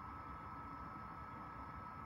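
Quiet room tone: faint steady background noise with a thin, steady high-pitched hum.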